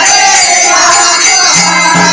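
Group of people singing a Hindu devotional song together, with metallic percussion ringing over the voices and a steady low drone that drops out and returns.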